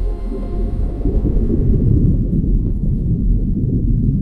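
Loud, deep rumbling drone from the soundtrack of an AI-generated perfume commercial. Faint high ringing tones in it fade out within the first second.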